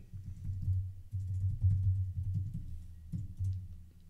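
Typing on a computer keyboard: a quick run of keystrokes entering a short command, heard mostly as low thumps.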